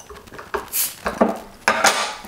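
Crown cap levered off a bottle of bottle-conditioned beer with a metal bottle opener, with a short hiss of escaping gas about a second in. A metal clatter near the end as the opener is set down on the counter.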